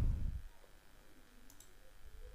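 A faint computer mouse click about one and a half seconds in, over quiet room tone.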